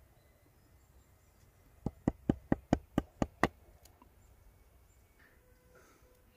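A knife blade flicking small chips off the end of a heather-wood stopper: a quick run of about eight sharp clicks, roughly five a second, starting about two seconds in.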